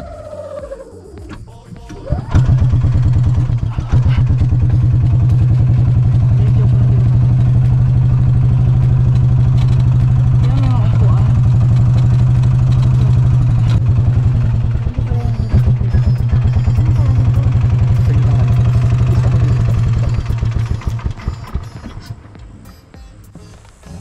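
Golf cart engine running steadily under way, with an even, rapid pulsing. It comes in about two seconds in and falls away near the end.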